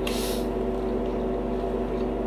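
A steady hum made of several fixed tones, like a running motor or fan in a small room. A short hiss of noise comes at the very start.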